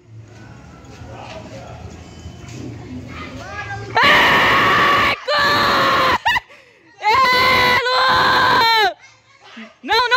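Loud, high-pitched yelling: four long sustained cries of about a second each, starting about four seconds in, the last three dropping in pitch at their ends. Before them only a faint low hum.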